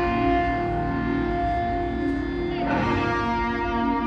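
Electric guitar played through effects pedals, holding chords that ring on, with a new chord struck about two and a half seconds in.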